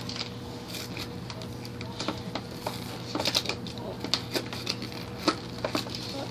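Stiff clear plastic blister packaging of an action figure being cut and pried open, crackling with irregular sharp snaps and clicks over a steady low hum.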